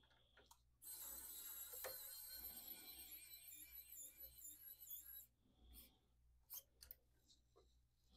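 Small electric precision screwdriver running for about four and a half seconds as it drives a screw into a 3D printer's print head, its motor whine wavering in pitch under load. A few faint clicks follow near the end.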